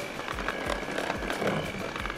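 Electric hand mixer running, its beaters whipping a creamed mixture of ghee, sugar and eggs in a glass bowl: a steady motor whine with a low knock two or three times a second.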